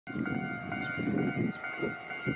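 Toyohashi Railway 1800 series electric train approaching in the distance, heard as an uneven low rumble under several steady high tones, with a few faint short chirps above.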